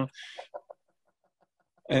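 A man's voice trails off into a short breathy exhale, followed by a pause of about a second. A spoken word comes near the end.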